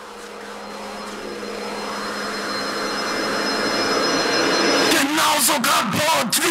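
Electronic intro of an industrial nu-metal track: a noise riser that grows steadily louder for about five seconds, then breaks into stuttering, chopped sounds with pitch bends and brief dropouts near the end.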